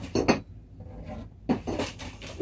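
Small hard parts handled and knocked together in a few sharp clinks and rattles: two close together just after the start, then more about a second and a half in.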